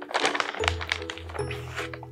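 Rustling of a plastic bag of sandy cactus potting mix as a gloved hand scoops soil out of it, with small crackles and soft thuds, over steady background music.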